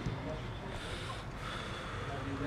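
Open-air football pitch sound: distant players' voices with a short breathy hiss about a second in.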